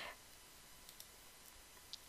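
Near silence with a few faint computer mouse clicks, the clearest one near the end.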